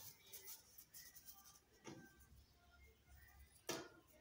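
Near silence with faint rustling of cotton rags being squeezed and balled up by hand, and one soft knock near the end.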